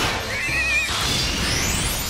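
Cartoon sound effects over the score: a short warbling screech from the animated bat creature about half a second in, over a dense rushing noise, with a rising whoosh in the second half.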